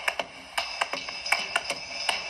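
Hand claps setting a tempo to count in the band: a quick run of sharp claps, about four a second, on an old film soundtrack.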